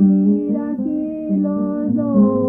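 Hispanic folk song music from New Mexico and southern Colorado: acoustic guitar accompaniment with held melodic notes running on without a break.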